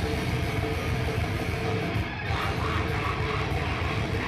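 Hardcore band playing live and loud, with electric guitar over a dense, continuous wall of sound and a brief dip about two seconds in.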